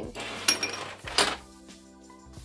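Two sharp glass clinks, about half a second apart, as small glass glitter shaker jars are set down among other jars, with background music playing underneath.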